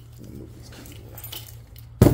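Light metallic clinks and rattles as a replacement blade is flexed and worked onto the wheels of a portable band saw, mixed with keys on a lanyard jangling, over a steady low hum.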